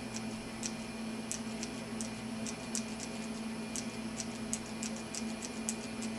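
Repeated small clicks at an uneven pace, about two to three a second, from the lightsaber hilt's push-button switch being pressed over and over to step the blade through its colours. A steady low hum runs underneath.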